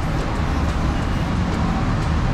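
Steady low rumble and general background noise of a rail station concourse, with no distinct events.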